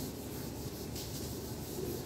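Handheld whiteboard eraser wiped across a whiteboard, wiping off dry-erase marker: a steady rubbing.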